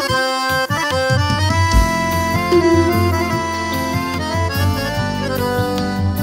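Accordion playing a melodic instrumental piseiro passage, sustained notes changing every fraction of a second, over the band's continuous bass and beat.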